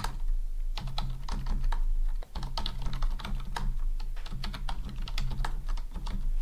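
Typing on a computer keyboard: quick runs of keystrokes with short pauses between them.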